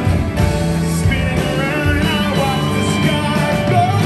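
Rock band playing live through a PA, with electric guitars, bass and drums under a lead vocal.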